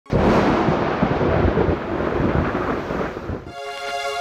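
Thunderstorm sound effect: rumbling thunder over rain, cutting off sharply about three and a half seconds in, when music with held tones starts.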